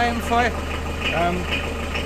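An engine idling steadily with a low, even hum, under a few brief spoken syllables.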